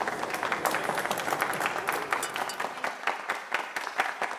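Audience applauding, many hands clapping, easing off slightly toward the end.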